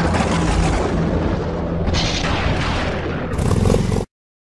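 Cinematic logo-intro sound effect: a loud, dense rumble over a low drone, brightening about two seconds in and again near the end, then cutting off suddenly.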